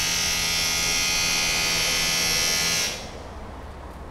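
Electric power drill running steadily with a high-pitched whine, then stopping about three seconds in.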